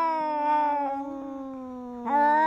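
A cat's long, drawn-out yowl, falling slowly in pitch and fading from about halfway through.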